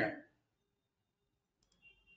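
Mostly quiet, with a couple of faint computer mouse clicks near the end as a chat is selected in a web browser.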